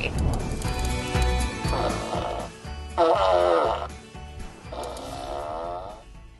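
Recorded fart sounds from the sound machine inside a plush stuffed duck: three long, quavering fart noises, each just under a second, the middle one loudest with a sagging pitch.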